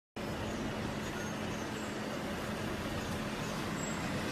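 Steady street traffic noise with a low, even engine hum.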